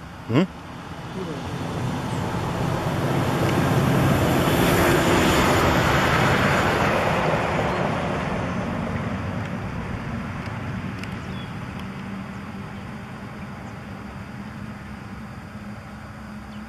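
A passing vehicle: a rushing noise that swells over the first few seconds, peaks around the middle and slowly fades away. Right at the start, a short, loud human 'mm'.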